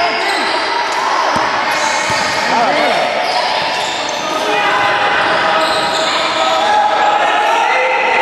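Basketball game play in an echoing sports hall: sneakers squeaking on the court floor, the ball bouncing, and players' voices calling out.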